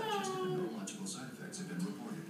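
Schnauzer puppy giving one drawn-out whine that falls slightly in pitch and ends about two-thirds of a second in, with a television voice talking underneath.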